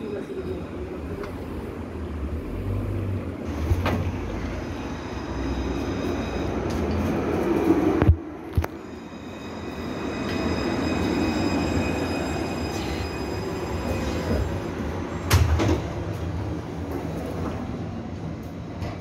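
Low-floor electric tram pulling into the stop: a steady rumble that swells as it rolls past and slows, with a faint high whine from its motors. A sharp knock about eight seconds in and a clunk a little after fifteen seconds.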